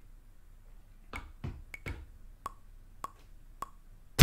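Faint, sharp clicks from the buttons of a hardware groovebox being pressed one at a time as a drum pattern is programmed, about six presses spread over a few seconds.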